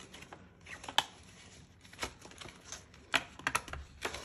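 Handling of a plastic binder pocket as a card and cash are slipped into it: soft rustling with a few light clicks and taps, closer together near the end.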